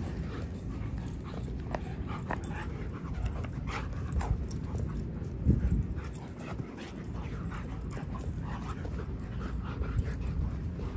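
Two dogs playing rough, with many short dog vocal sounds over a steady low rumble. A person laughs about halfway through.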